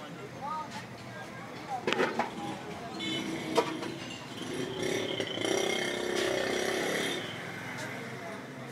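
Street noise: people's voices mixed with motor vehicles, with a steadier engine-like sound rising louder from about five to seven seconds in.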